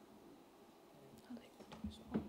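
Near silence: room tone, with faint low voices murmuring in the second half.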